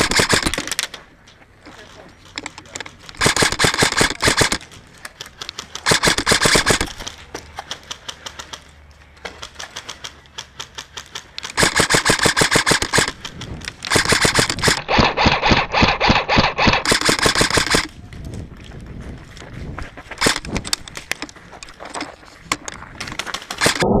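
Airsoft rifles firing on full auto: rapid streams of sharp clicking shots in repeated bursts of one to three seconds, about eight bursts with quieter gaps between.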